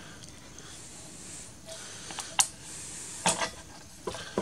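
Handling noise from a flat LED flood light fixture being turned over in the hands: faint rubbing and a few small clicks, the sharpest about two and a half seconds in.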